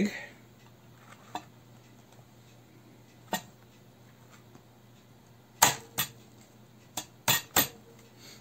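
Dishes and utensils being handled: about seven short, sharp clinks and knocks, a couple faint in the first half and most of them, louder, in the second half.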